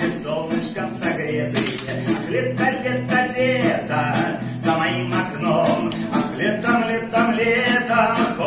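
A man singing to his own strummed classical guitar, the strumming keeping a steady rhythm under the voice.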